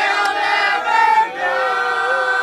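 A small mixed group of men and women singing together, moving through a short phrase and then holding a long note.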